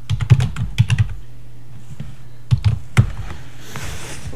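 Computer keyboard typing: a quick run of keystrokes for about a second, a pause, then a few more keystrokes about two and a half to three seconds in as a shell command is finished and entered.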